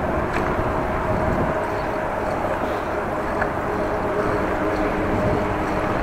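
Steady wind rushing over the microphone of a cyclist riding into a headwind, with a faint steady hum underneath.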